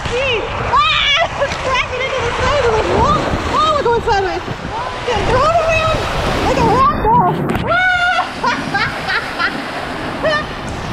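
Water rushing and splashing along a water-slide flume under a rider's tube, with many short, rising-and-falling excited cries and exclamations over it.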